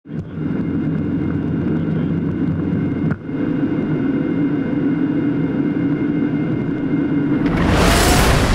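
Jet airliner rolling down a runway, heard from the cockpit: a steady low engine and rumble noise with several steady whining tones and a brief break about three seconds in. Near the end a loud rising whoosh builds.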